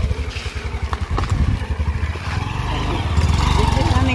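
Motorcycle engine running at low revs, pulsing unevenly at first and then steadier and a little louder as the bike pulls away slowly.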